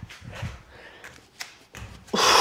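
A few faint thuds of bare feet and hands landing on a rubber gym floor as a person jumps from a jumping jack down into a high plank, one sharper knock about one and a half seconds in.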